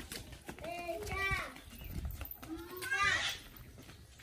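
Young children's voices calling out in a few short, high-pitched cries that bend up and down in pitch, one pair about a second in and another near the end.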